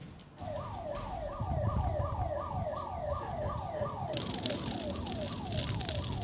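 Emergency vehicle siren in a fast yelp, each cycle sliding down in pitch, about four cycles a second, starting about half a second in over a low rumble. A steady hiss joins about four seconds in.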